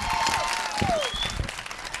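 Audience applauding, with a few short cheers rising and falling over the clapping near the start.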